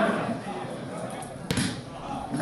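A football kicked once, a single sharp thud about one and a half seconds in, with players' voices shouting across the pitch.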